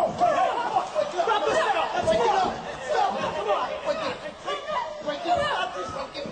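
Several women's voices shouting and yelling over one another in a scuffle, a jumble of high overlapping cries with no clear words.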